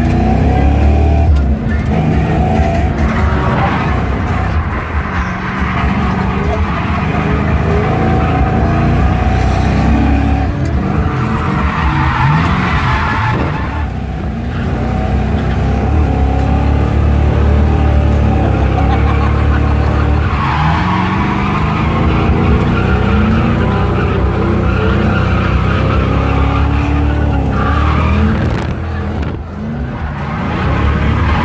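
Fox-body Mustang heard from inside its cabin while drifting: the engine revs up and down again and again under hard throttle, and the tyres squeal in several long stretches as the car slides.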